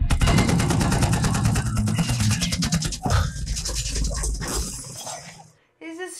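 Film soundtrack action scene: a fast run of automatic gunfire with shattering debris over a heavy low rumble and music. The shots thin out after about three seconds and die away near the end.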